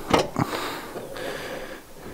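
Toyota GT86 boot-lid latch released by hand: two short clicks as the catch lets go, then a faint hiss as the lid lifts.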